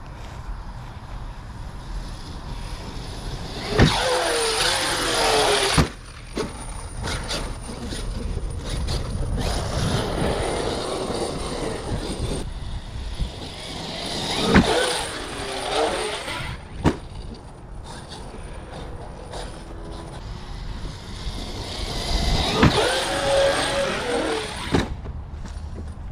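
Large 8S brushless RC monster truck driven in three bursts, its motor whine rising and falling with the throttle, with a few sharp knocks from hitting the ramp and landing.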